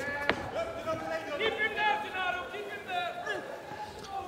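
A single sharp impact of a strike landing in a kickboxing bout, then voices shouting from ringside for about two seconds.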